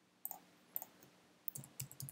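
A few faint, short clicks: a mouse click or two, then a quick run of computer keystrokes near the end.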